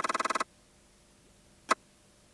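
A short buzzy sound effect in a TV commercial, pulsing rapidly and evenly, that cuts off about half a second in. After it comes near silence, broken by one brief click near the end.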